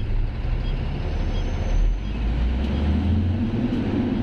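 Truck engine running, heard from inside the cab as a steady low rumble that grows a little stronger and higher from about halfway through.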